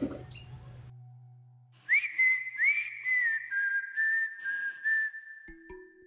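A whistled tune on the soundtrack begins about two seconds in. It opens with a couple of notes that swoop up, then moves in small steps up and down around one pitch. Near the end, ringing bell-like notes come in, stepping upward, as the music carries on.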